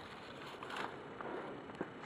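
Rustling of branches and dry undergrowth brushing against the phone and clothing as someone pushes through brush, louder just under a second in, with a few light ticks of twigs.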